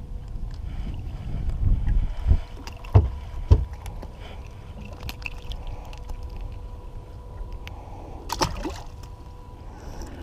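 Handling noises on a small fishing boat as fish are landed: three sharp knocks between about two and three and a half seconds in, over a low rumble, and a sharp click after about eight seconds. A faint steady tone runs underneath.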